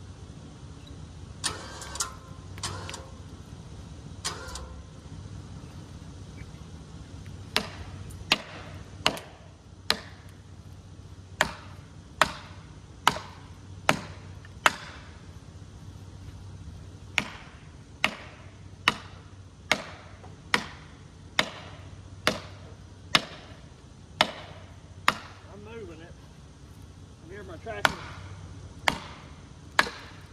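Sharp hammer blows on felling wedges in a tree's back cut, struck in runs of several at a little under one a second, knocking the wedges loose while a tractor holds pressure on the tree. A tractor engine idles steadily underneath.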